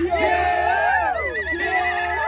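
Several people's voices calling out together in long sliding cries, joined about halfway through by a high, trilling ululation.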